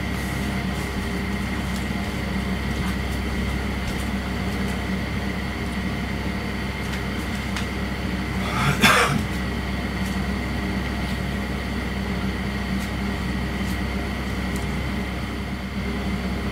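Steady electrical or mechanical hum with a constant high whine, the background noise of a room recorded at night. About nine seconds in there is one short burst of noise, the loudest sound here, while a person is close to the camera.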